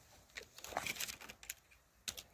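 Hand pruning shears snipping at a pear branch, a few short faint clicks and cuts as a stub cut is trimmed back.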